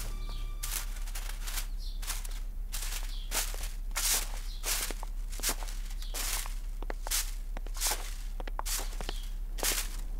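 Straw broom sweeping leaves on grass: a steady run of brushing swishes, roughly one every half second.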